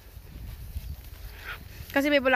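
Low, uneven rumbling noise from wind and handling on the microphone of a moving handheld camera, with a faint short call about a second and a half in.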